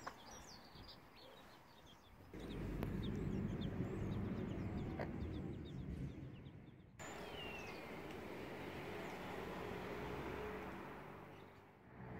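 Week-old Silkie chicks peeping in short, high chirps, scattered through the first half, with one longer falling call around the middle, over a low steady outdoor rumble.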